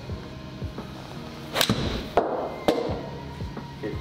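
A golf iron striking a ball off a hitting mat: one sharp crack about one and a half seconds in, then another sharp knock about a second later, over steady background music.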